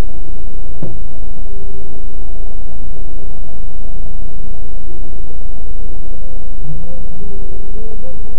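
Bus engine idling, a steady, distorted low rumble picked up by the bus's onboard CCTV microphone, with a brief falling tone about a second in.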